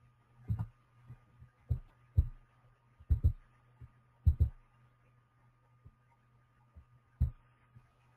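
Irregular dull thumps and clicks from a computer mouse and keyboard being worked on a desk, picked up through the microphone, some coming in quick pairs, over a steady low electrical hum.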